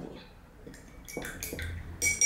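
A few faint, light clicks and knocks in the second half, from painting tools being handled: a paintbrush being moved and set down among the paint pots.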